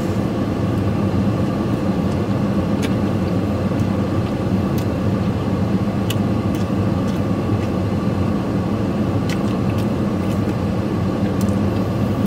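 Steady hum of a vehicle's engine idling, heard from inside its cab, with a few faint clicks over it.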